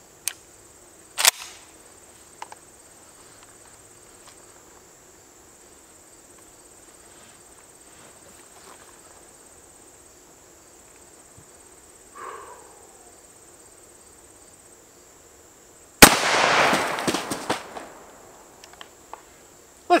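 A 12-gauge Mossberg 500 pump shotgun fires a single Winchester XP3 sabot slug about three-quarters of the way through, a sharp, very loud report that rings out for about two seconds. A few small clicks come before it as the gun is readied.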